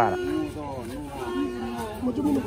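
People's voices talking, with a man's voice finishing a phrase at the very start; speech is the main sound.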